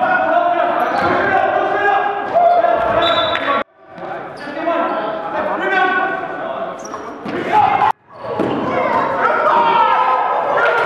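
Game sound of a basketball bouncing on a gym floor, with players' voices echoing through the large hall. The sound cuts out abruptly twice, about four and eight seconds in.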